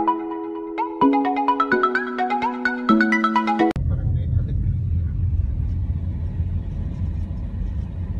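A short melodic intro jingle of bright, bell-like notes cuts off abruptly about four seconds in. It gives way to the steady low rumble of a car driving, heard from inside the cabin.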